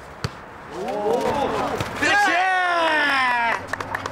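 A jokgu ball kicked once with a sharp knock, followed by several voices crying out together and then one long, drawn-out, falling exclamation.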